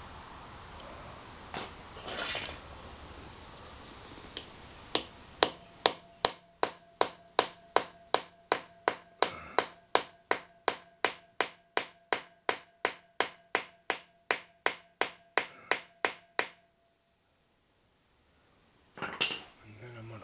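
Hammer striking a Torx bit to drive it into a drilled-out, heat-loosened broken exhaust stud in a motorcycle cylinder head, so the bit can grip the stud. After a couple of light taps, a steady run of about two and a half blows a second goes on for about eleven seconds, each blow ringing briefly.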